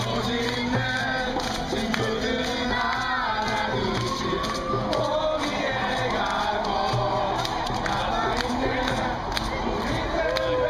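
A group of young people singing together to acoustic guitars, over a crowd's chatter and occasional cheering.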